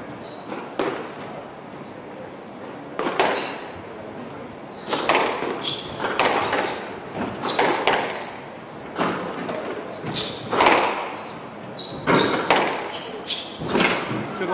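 A squash rally: the rubber ball is struck by rackets and hits the walls in sharp cracks about one to two seconds apart, each ringing briefly in the large hall. Short high squeaks of court shoes on the wooden floor come in between.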